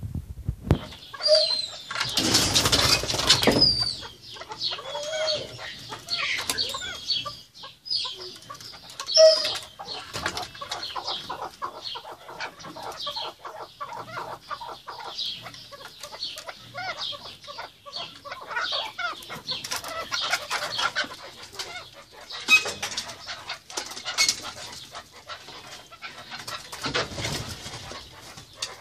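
Alectoris partridges (kekliks) calling in runs of short, rapid clucking notes, the chuckling calls of a male courting a female. There is a loud rustling burst about two seconds in and two shorter ones near the end.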